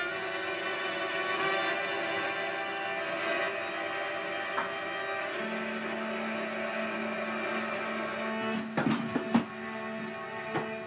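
Viola played live through electronic delay and reverb effects, its notes layered into sustained ambient tones, with a low note held from about halfway. Near the end come a few sharp clattering knocks: a beer bottle being dropped.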